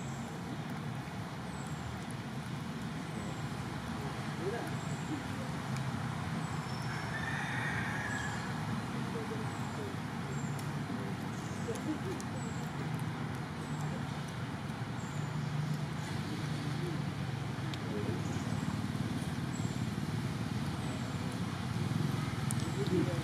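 Outdoor ambience: a steady low rumble with faint voices in the background, and a short high chirp repeating about once a second.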